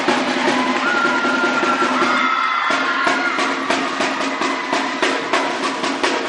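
A drumline of marching snare drums playing a fast cadence of dense strikes and rolls. Near the middle the playing thins briefly, then comes back as sharper, evenly spaced accented hits.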